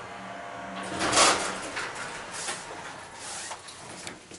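Elevator doors of a 1970s Otis hydraulic elevator sliding, loudest about a second in and trailing off in weaker rattles, over a low steady hum.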